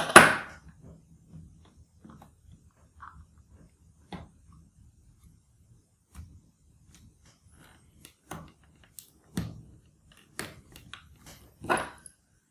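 Scattered light knocks and clicks as a metal 2.5-inch drive caddy holding an SSD is set into a laptop's drive bay and pressed into place, with a louder knock right at the start.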